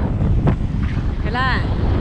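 Wind buffeting a phone's microphone while moving along a road, a steady low rumble, with a couple of handling knocks near the start as a finger rubs over the phone and a brief vocal sound about a second and a half in.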